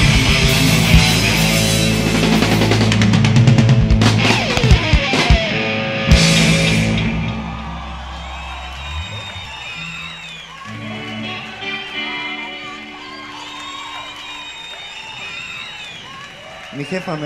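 Live rock band with electric guitars and drums closing a song: loud playing with a few heavy final hits about four to six seconds in, then the sound rings out and dies down. The rest is quieter, with held instrument tones and crowd noise from the arena.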